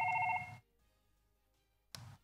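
Desk telephone ringing with an electronic warbling tone for an incoming call, cut off about half a second in as it is answered. A short click near the end.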